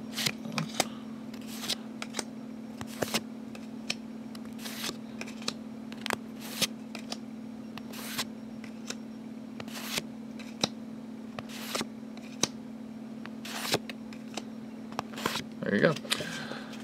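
Pokémon TCG code cards being handled and flipped one after another: short papery clicks and slides at irregular intervals, roughly one a second, over a steady low hum.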